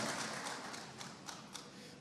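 Audience applause dying away, thinning to a few scattered claps as it fades.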